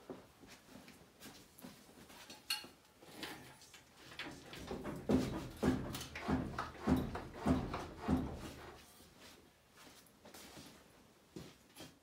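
Knocking and scraping as a Land Rover 2.25-litre diesel engine hanging from an engine hoist is rocked back and forth to work it off the bell housing. Scattered clicks, then a run of about six rhythmic knocks roughly half a second apart in the middle.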